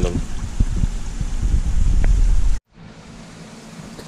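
Water sloshing and splashing in a shallow plastic tub as two young white sturgeon thrash, with a heavy low rumble and a few knocks. The thrashing shows the fish are badly agitated, which the keeper puts down to ammonia in their shipping water. The loud part cuts off suddenly about two-thirds through, leaving a much quieter steady water noise.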